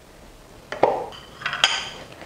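Glass plate and spatula knocking against a bowl as softened butter is scraped off the plate. Two light knocks are followed by a brighter clink with a short ring about a second and a half in.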